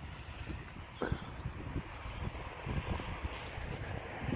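Wind rumbling on the microphone, with footsteps and rustling through long grass and dry undergrowth, a few soft thuds among them.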